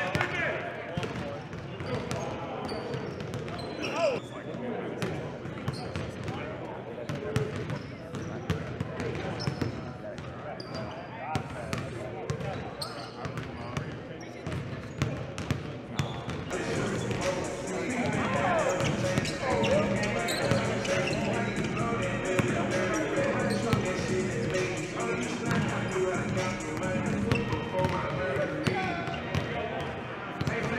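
Basketballs bouncing on a gym floor, many sharp thuds, amid indistinct talking and calls from players and coaches. It gets busier and louder a little past halfway through.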